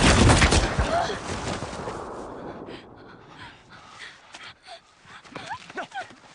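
A sudden loud bang right at the start that rings away over about two seconds, followed by faint scattered rustles and short sounds.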